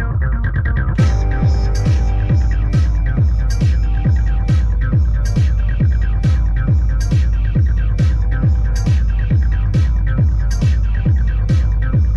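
Electronic dance track played live on hardware synths and drum machines. A steady four-on-the-floor kick thuds about twice a second over a constant low bass drone, and crisp high percussion hits come in about a second in.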